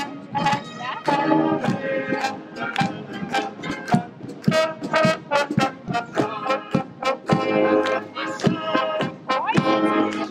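Marching brass band playing a march as it passes, with tubas, trombones and trumpets over a steady, regular beat.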